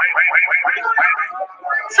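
Rapid run of short, falling bird-like chirps, about seven a second, as a sparrow's sound, stopping just over a second in; a woman's voice starts near the end.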